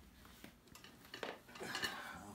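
Light clicks and clinks of hands handling equipment: a few scattered taps, denser and louder in the second half.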